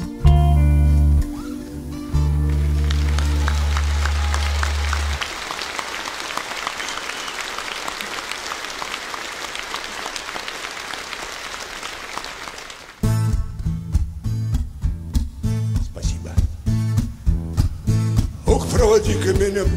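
A band's final chord with bass rings out, then an audience applauds steadily for several seconds. About thirteen seconds in, a strummed acoustic guitar with bass starts a steady rhythmic intro to the next song.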